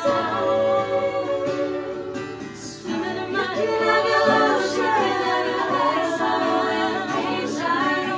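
A group of women singing together in harmony, with long held notes, over a strummed acoustic guitar.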